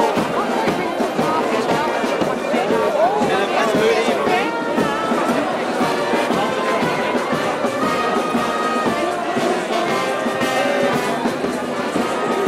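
Brass band music playing steadily, with a crowd talking over it.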